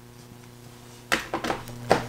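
A quick run of about five sharp clicks and knocks starting about a second in, as the projector's power cord is plugged back in and the machine is handled.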